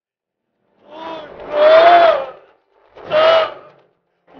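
A man wailing and crying out in anguish: a long high-pitched cry about a second in that rises and falls, then a shorter cry near the end.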